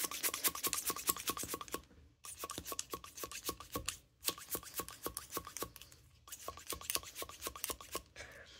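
Ink being spattered by flicking brush bristles: four runs of rapid, fine ticking, each lasting one and a half to two seconds, with short pauses between.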